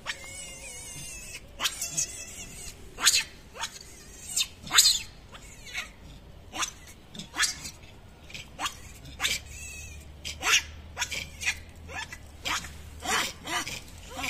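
Baby macaque giving short, high-pitched distress cries over and over, about one or two a second, many dropping in pitch, as it calls for its mother while stuck.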